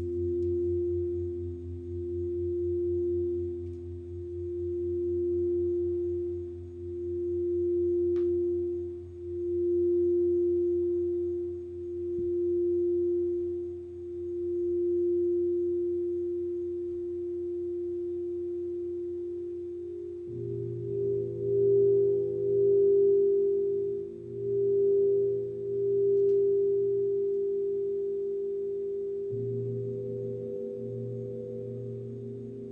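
Singing bowls held in a steady, near-pure ringing tone that swells and fades in slow pulses about every two seconds. About two-thirds of the way through, a second, higher bowl tone and a low hum join in.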